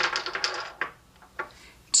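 Small glass nail polish bottles clicking and clinking together as they are rummaged through and picked up: a rapid run of clicks, then a few single clicks.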